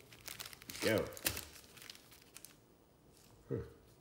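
Foil trading-card pack wrappers crinkling as a stack of sealed packs is handled and fanned out, mostly in the first half; it turns quieter after about two and a half seconds.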